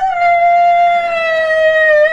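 A man's voice singing into a microphone, holding one long note that sinks slowly in pitch, in the ornamented style of a minaret chant.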